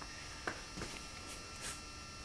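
Steady electrical hum and buzz, with a few faint soft ticks.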